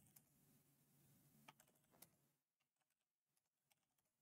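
Near silence, with a few faint keystrokes on a computer keyboard near the middle.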